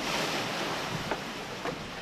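Steady rush of storm-driven water and wind, with splashing, as floodwater rises around low-lying stilt houses in a typhoon.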